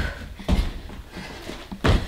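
Thuds of feet and hands hitting an exercise mat on a wooden floor during burpees and jumps over a sandbag: one at the start, another about half a second later, and a louder one near the end.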